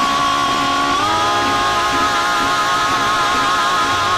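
Women's voices holding one long sung note that steps up in pitch about a second in and then wavers with vibrato, over a loud, distorted band sound.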